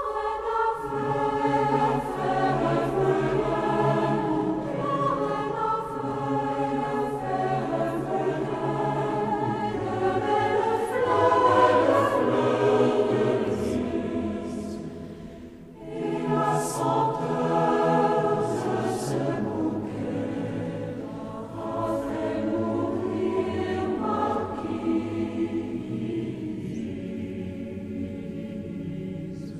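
A choir singing a French historical song, one verse phrase ending about fifteen seconds in and the next starting a second later.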